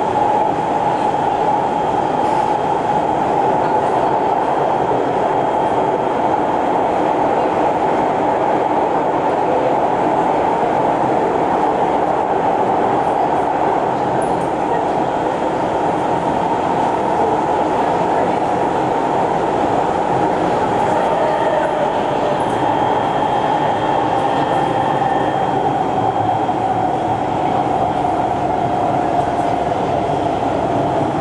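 Kawasaki C151 metro train running at speed, heard inside the car: a steady rumble of wheels on rail with a strong mid-pitched whine from the Mitsubishi GTO chopper traction drive. The whine dips slightly in pitch near the end.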